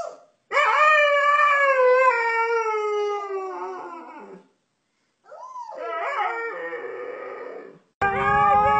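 Husky howling: one long howl that slowly falls in pitch, then after a short pause a second, wavering howl.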